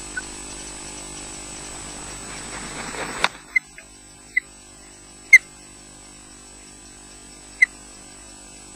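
An osprey landing on the nest: a rush of wing noise builds up and ends in a sharp knock as it touches down. Then come four short, sharp, high chirps from the ospreys, the loudest about five seconds in, over a steady camera hum.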